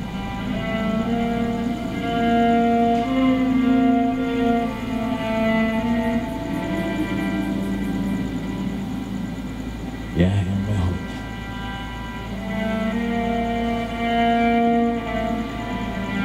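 Cello playing slow, long held notes, one after another. A short low thump comes about ten seconds in.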